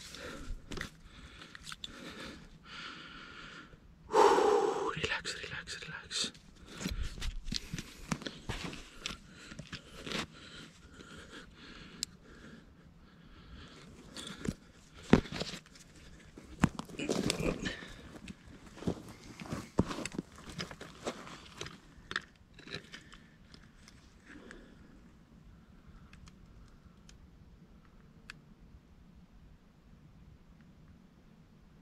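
Close handling of gear and shifting on dry brush: rustles, crinkles, crunches and small clicks, with the loudest bursts about four seconds in and again around fifteen to eighteen seconds, dying down to quiet near the end.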